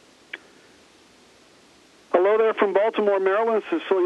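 Faint steady line hiss with a single short click, then from about two seconds in a person speaking over a narrow, telephone-like audio link.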